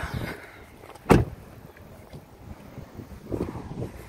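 A car door is shut with one loud slam about a second in.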